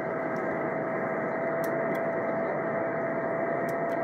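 Steady hiss from a Yaesu FT-847 transceiver receiving the JO-97 satellite's 145 MHz downlink in upper sideband, cut off sharply above about 2 kHz by the sideband filter, with a single steady tone running through it. The passband is empty: no station answers the call.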